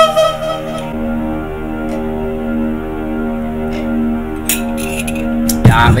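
Instrumental backing track of a slow ballad playing out: steady held keyboard chords over a low bass, with the held melody note stopping about a second in.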